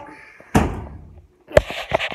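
Two heavy thumps about a second apart, the first trailing off in a low rumble, the second louder and followed by brief rustling.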